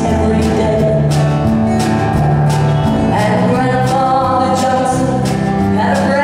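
A woman singing a country song live, accompanying herself on acoustic guitar with a band behind her.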